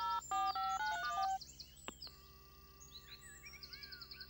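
Mobile phone keypad tones as a number is dialled, a quick run of short beeps over about the first second and a half, followed by a click and a faint steady tone on the line.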